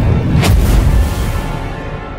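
Cinematic logo-reveal music with a deep boom about half a second in, then a low rumbling tail that fades.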